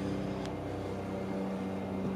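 Steady electrical hum with several fixed tones from the amplifier dyno bench, heard while a car amplifier is driven into a 4-ohm load for a dynamic-burst power test. A faint click about half a second in.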